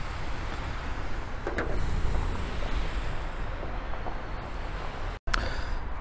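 Steady outdoor background noise with a low rumble and hiss, broken by a brief dropout at a cut about five seconds in.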